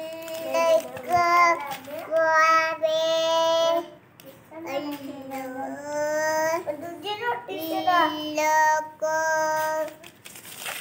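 A young child singing in a high voice, in several phrases of long held notes with short breaks between them.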